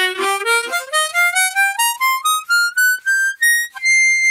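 Hohner Pentaharp harmonica, a Special 20 with its pentatonic blues-scale tuning, playing the blues scale as an unbent run of single notes stepping steadily up through its octaves, then holding one high note near the end.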